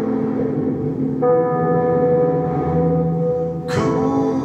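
Sustained synthesizer chords played on a ROLI Seaboard RISE 49 keyboard, held steady, with a new chord coming in about a second in. Near the end a voice comes in as the singing begins.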